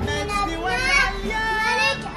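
A young boy singing, his voice wavering and gliding in pitch.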